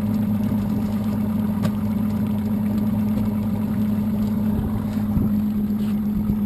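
Evinrude outboard motor idling steadily with a low, even hum.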